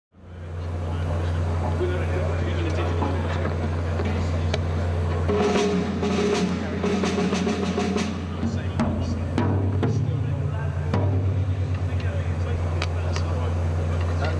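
Loud, steady low electrical hum from the stage amplification, with scattered drum hits over it. The band blame the hum on an amp and on dirty mains power.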